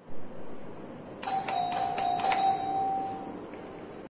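A newly installed doorbell is rung by its push-button and chimes: a short ringing tune starts about a second after the press and fades out about two seconds later, showing the installation works.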